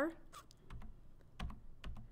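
Several light, irregular clicks of a computer keyboard and mouse in use, some coming in quick pairs.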